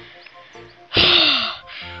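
A person gasps sharply about a second in, a short breathy burst with a falling voiced edge. Soft background music comes in near the end.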